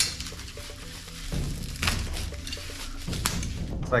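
Plastic bags and bubble wrap rustling and crinkling as parts are unwrapped from a box, with a couple of sharper crackles, over faint background music.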